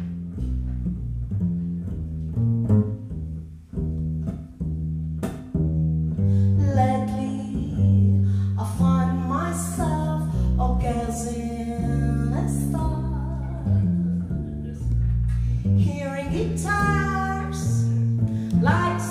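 Live small-group jazz: a plucked double bass and an archtop electric guitar open the tune, and a woman begins singing about six seconds in, accompanied by the bass and guitar.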